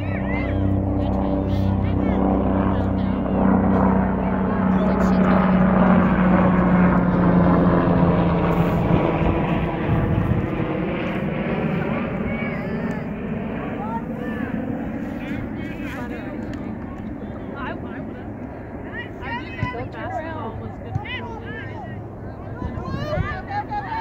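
Engine drone of an aircraft flying over, building to its loudest about four to ten seconds in and then fading slowly away. Faint voices and small knocks come from the field as it dies down.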